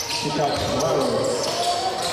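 A basketball being dribbled on a hardwood court during live play, with voices in the hall over it.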